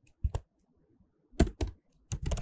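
Keystrokes on a computer keyboard as a line of code is typed: a couple of clicks near the start, then a quick run of about four keystrokes about a second and a half in.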